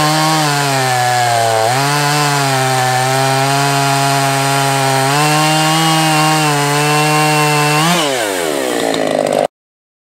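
Two-stroke gas chainsaw cutting through a large log at full throttle, its engine note sagging under load and picking back up several times. About eight seconds in the pitch falls steeply as the throttle is let off, then the sound cuts off abruptly.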